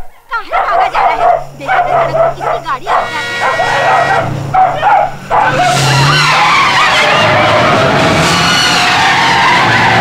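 A dog barking among shouting voices, then from about halfway a loud, continuous screech of a bus skidding out of control.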